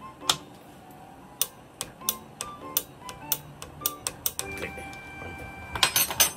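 Metallic clicks and clinks of a spanner working the shaft nut on a motorcycle rear shock held in a vise, irregular at about three a second, over background music.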